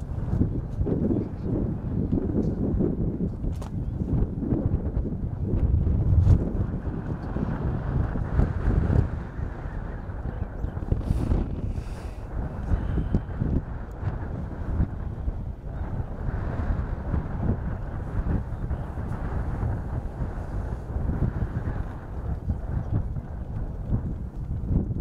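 Wind buffeting the microphone: a low, uneven rumble that swells and eases in gusts, with a few faint clicks.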